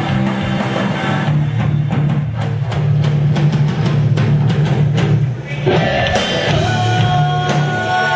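Rock band playing live, an instrumental passage on electric guitar, bass guitar and drum kit with steady drum hits. About five and a half seconds in the sound briefly drops, then held guitar notes ring out over the band.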